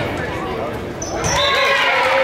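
A volleyball thud about a second in, just after a short high squeak. Then players' voices shouting and cheering, echoing in the gym hall.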